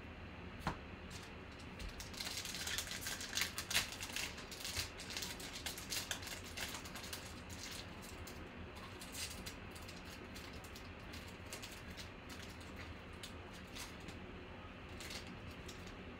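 Foil wrapper of a Panini Prizm football card pack crinkling and crackling as it is torn open, densest from about two to seven seconds in, then a few faint ticks and rustles as the cards are handled.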